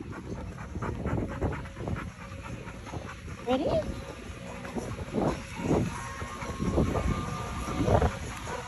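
A Labrador retriever panting close to the microphone, in irregular soft breaths.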